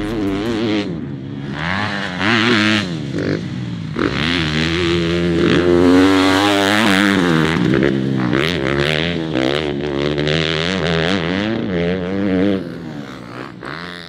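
Suzuki RM-Z four-stroke motocross bike being ridden hard, its engine revving up and falling back again and again through throttle and gear changes, fading away near the end.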